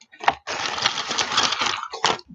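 Crinkly packaging being handled and rummaged through, a dense crackling rustle after a short tap.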